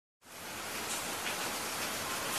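Steady rain falling, fading in from silence over the first half second, with no music yet.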